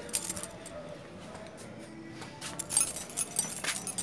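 A bunch of keys jangling and chinking as they are carried, a quick run of light metallic clinks starting about two and a half seconds in.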